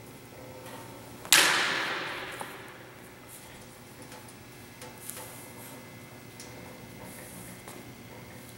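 Two steel broadswords clashing once about a second in: a sharp strike that rings and dies away over a second or so in the reverberant gym. A few faint taps and scuffs follow.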